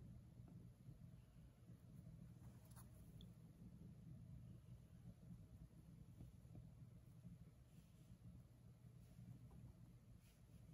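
Near silence: room tone with a steady low hum, and one faint tick just before three seconds in.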